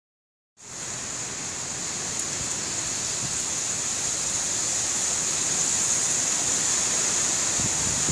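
A storm's steady rushing noise, starting abruptly about half a second in and growing slightly louder.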